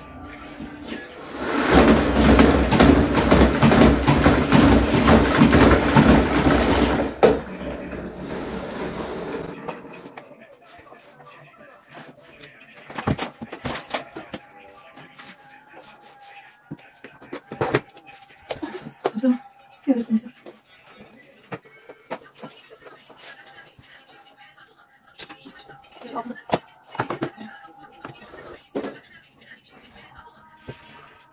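Spin mop being wrung in its bucket: the pumped handle spins the wringer basket with a loud, rapid whirring rattle for about five seconds that then winds down. After that, scattered knocks and clicks as the mop works across the wooden floor.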